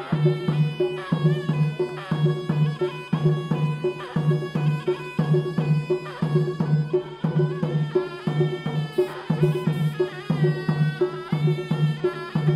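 Traditional southern Iranian folk music: a reedy, shawm-like wind instrument plays a bending, ornamented melody over a steady, even drum beat.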